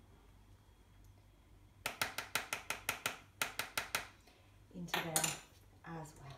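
Small clicks from handling a sesame oil bottle over a glass bowl, most likely its cap being twisted open: a quick, even run of about six clicks a second with a short break, then a brief louder scuffling noise near the end.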